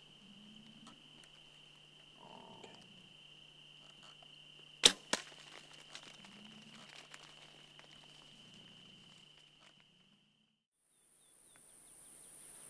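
A bow shot at a hog at night: a single loud sharp crack about five seconds in, then a second, smaller crack a fraction of a second later. A steady high insect drone runs underneath and cuts out about ten seconds in.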